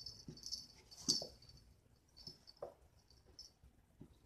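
A cat batting at a round plastic ball-track toy: a faint, high rattling of the balls that comes and goes, with a sharp knock about a second in and another just past halfway.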